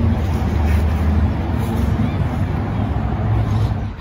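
A steady low rumble of background noise with a faint hiss above it, with no clear events.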